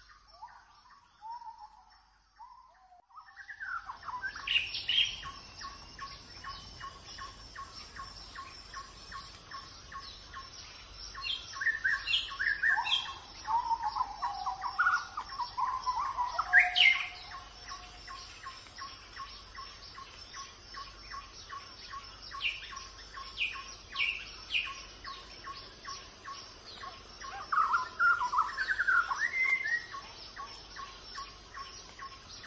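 Wild birds chirping and calling in short gliding phrases over a steady, fast-pulsing background. The sound starts a few seconds in, and the loudest calls come around the middle and near the end.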